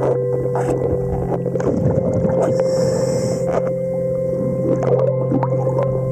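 Underwater sound picked up by a diver's camera at a boat's hull: a steady mechanical hum with several held tones, carried through the water, with irregular clicks and scraping noises over it.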